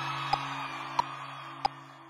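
Metronome click track ticking steadily, about three clicks every two seconds, over the last sustained notes of the song fading out.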